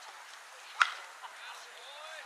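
A single sharp crack about a second in: a softball bat hitting the pitched ball, over faint voices in the background.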